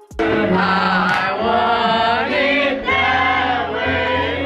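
Loud live music from a piano bar: voices singing together over a piano, starting suddenly just after the start.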